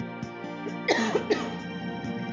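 A woman coughs twice in quick succession about a second in, over soft instrumental backing music.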